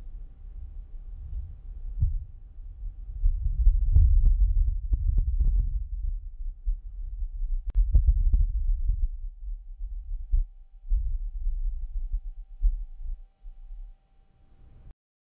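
Wind gusting on the surface of Mars, a low rumble recorded by the Perseverance rover's entry, descent and landing (EDL) microphone and filtered to remove the rover's own noise. It swells into two strong gusts, one about four seconds in and one about eight seconds in, then dies away near the end; the analysis puts the gust at roughly five metres per second.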